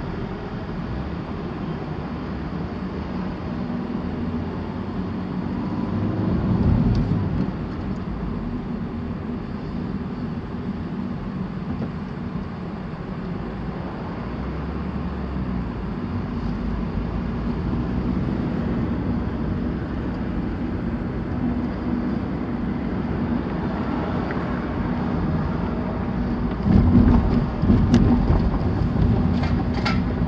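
Steady road and engine noise inside a moving car's cabin, a continuous low hum. It swells louder about a quarter of the way in, and again near the end, where a few sharp knocks are heard.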